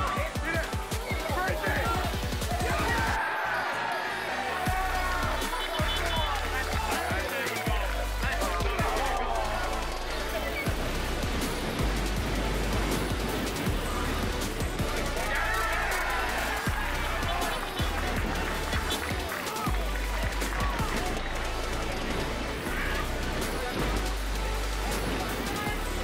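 Background music with a deep bass line that changes note every few seconds, with a voice over it.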